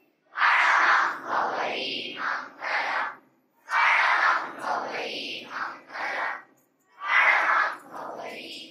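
A large crowd of schoolchildren chanting a prayer in unison: three similar phrases, each about two and a half seconds long, with brief silences between them.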